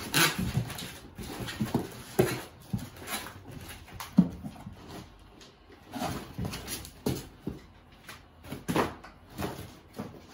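White foam packing blocks and a cardboard box being handled: irregular rubbing and rustling with short squeaks and light knocks as the blocks are pulled out and set aside.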